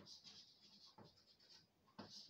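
Chalk writing on a blackboard: faint scratching, with a light tap about a second in.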